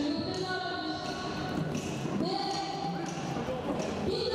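Traditional Khmer boxing music: a reedy wind instrument holding long notes that bend in pitch, over regular drum beats. It accompanies the fighter's pre-bout ritual.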